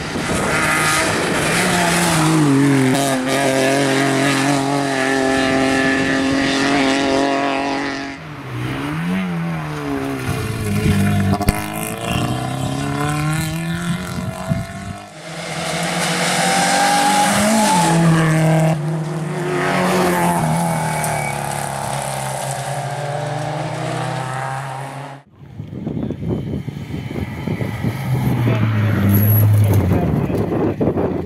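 Rally cars driven flat out on a tarmac stage, one after another. Their engines rev high and their pitch rises and falls sharply as they shift gears and brake into bends, with abrupt changes where one car's pass gives way to the next.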